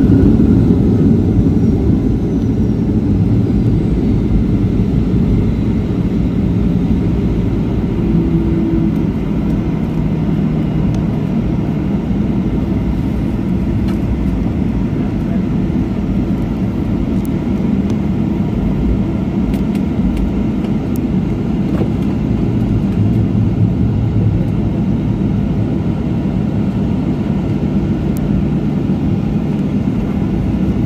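Steady cabin rumble of an airliner rolling out along the runway after touchdown, a little louder in the first couple of seconds as the plane slows, then even as it heads for the taxiway.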